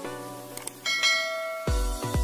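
A notification-bell ding from a subscribe-button animation rings out about a second in and fades slowly, over a light plucked intro music bed. It comes just after a pair of short click sounds. Near the end, a heavy bass electronic beat kicks in.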